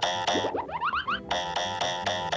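Cartoon chase music of fast repeated chords, about six a second. The chords break off for under a second near the middle for a quick run of rising boing sound effects, then resume.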